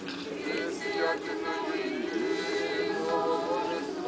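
A group of voices singing an unaccompanied Orthodox church chant, several parts held together in long sustained notes.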